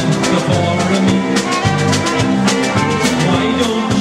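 Live polka band playing an instrumental passage: trumpet lead over electric bass and a drum kit keeping a steady dance beat.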